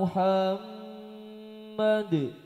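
A man chanting an Arabic sholawat phrase without accompaniment, in drawn-out notes. There is a short note with a scooping onset at the start, a faint lingering tail, and another short note near the end that slides down in pitch.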